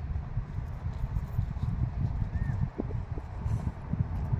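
Wind buffeting the microphone: an uneven low rumble that swells and drops, with a faint short chirp about two and a half seconds in.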